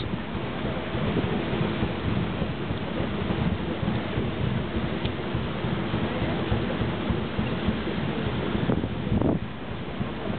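Wind buffeting the microphone in a continuous, uneven low rumble, over the steady noise of the paddle steamer PS Waverley under way.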